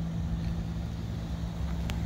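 2020 Toyota Camry XSE's four-cylinder engine idling with a steady low hum, with one light click just before the end.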